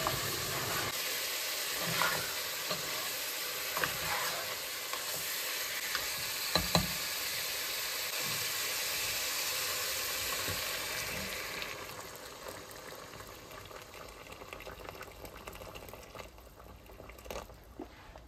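Meat and tomato stew sizzling in a nonstick pot while a plastic spatula stirs it, knocking against the pot a few times. Water is poured in, and the sizzling drops to a much quieter bubbling for the last third.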